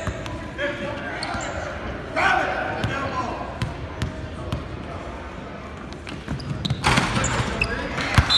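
Basketball bouncing on a hardwood gym floor, with spectators' voices carrying through a large gym. A loud burst of crowd noise rises near the end.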